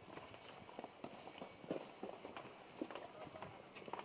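Footsteps of several people walking on a paved path, faint, irregular clicks of shoes a few times a second.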